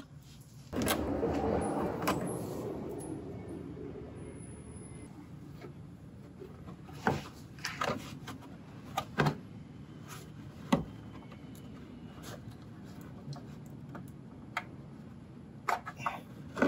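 Plastic wheel-well liner scraping and rustling as a gloved hand bends it back, starting suddenly about a second in and fading, followed by scattered sharp clicks and taps.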